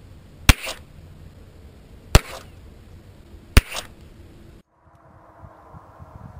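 Three shots from an Iver Johnson Eagle XL, a ported 6-inch long-slide 1911 pistol in 10mm, about a second and a half apart, each sharp and loud with a short echo. The sound cuts off abruptly about a second after the third shot.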